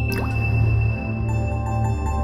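Background music of steady held tones, with a single water-drop sound effect, a sharp plink with a quick falling pitch, just after the start.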